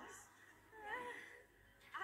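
A short, wavering, whimper-like vocal sound from an animated character about a second in. It is heard faintly through a TV speaker.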